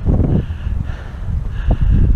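Wind buffeting the camera's microphone, a heavy, uneven low rumble.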